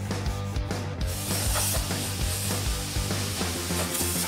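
Sanding strokes on body filler over a truck's steel hood, with background music that has a steady bass. From about a second in there is a steady hiss.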